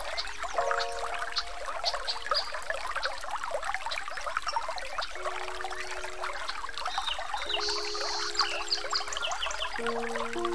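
Steady trickling, running water with short high chirps scattered through it, under a few slow, soft held music notes that change every few seconds.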